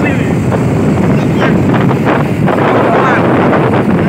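Wind buffeting the microphone on a moving motorcycle ride, a loud, steady low rumble mixed with the bikes' running noise, with faint voices over it.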